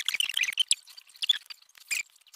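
Irregular clusters of short, high-pitched squeaks and chirps from the sped-up sound of a time-lapse.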